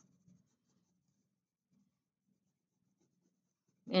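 Near silence, with only faint traces of a wax crayon being rubbed lightly across paper.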